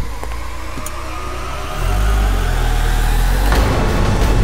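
A car engine running, rising in pitch and growing louder from about two seconds in.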